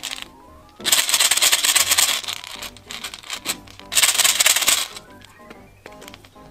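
Small plastic beads clattering into a metal muffin tin in two rushes of many tiny clicks, the first about a second in and the second about four seconds in, over light background music.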